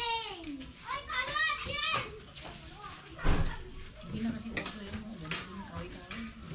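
Children's voices calling and chattering. A single sharp thump about three seconds in is the loudest sound.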